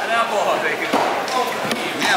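A cleaver chopping down through fish flesh into a wooden chopping block, making a few separate knocks, with people talking over it.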